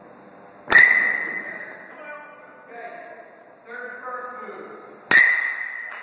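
Two crisp pings of a metal baseball bat hitting pitched balls, about four seconds apart, each ringing on for about a second after contact.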